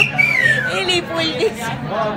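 People talking close by, with one high voice sliding down in pitch just after the start.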